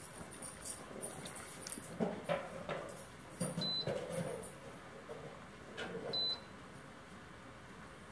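Two short, high beeps from a Cosori food dehydrator's touch control panel, a little over three seconds in and again about six seconds in, as the temperature setting is stepped down. Faint knocks and rattles sound in the background.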